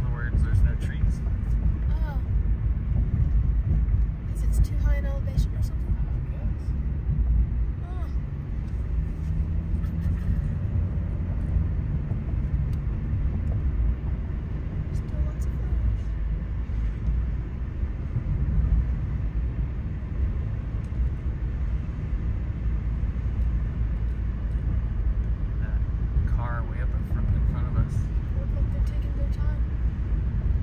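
Steady low rumble of a car driving along a paved road, heard from inside the cabin, with faint voices talking briefly near the start, about five seconds in, and near the end.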